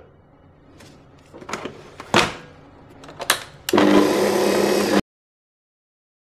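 Stand mixer being set going: a few mechanical clicks and knocks as the tilting head with its dough hook is lowered and locked, then the motor starts and runs steadily on the first speed with a low hum, cutting off suddenly after about a second.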